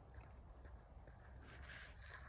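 Near silence, with only a faint low background rumble.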